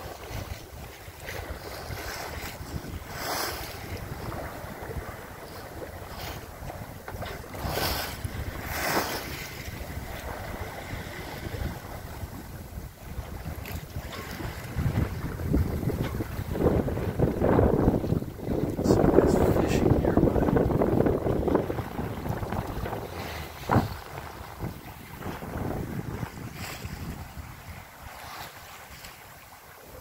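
Wind buffeting the microphone and water rushing along the hull of a Cal 29 sailboat close-reaching in about fifteen knots of wind. The sound swells louder for several seconds past the middle, then eases off.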